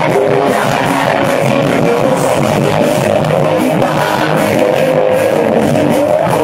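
Live rock band playing loud and steady: electric guitars and bass with drums, cymbal hits recurring throughout. It is heard from the audience, thin in the bass.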